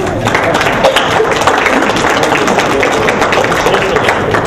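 A roomful of people applauding, with some laughter.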